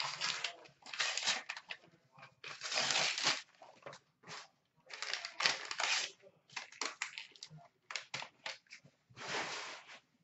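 Tissue paper crinkling and rustling in several bursts as it is pulled from a small cardboard box. Between the bursts come short taps and clicks of a clear plastic card case being handled.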